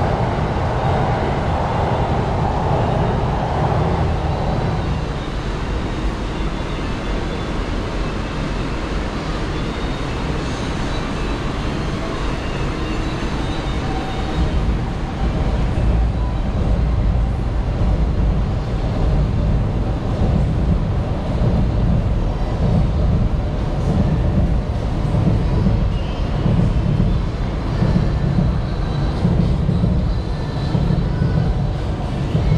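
City street noise under an elevated railway: a continuous low rumble of traffic that turns uneven and pulsing from about halfway through.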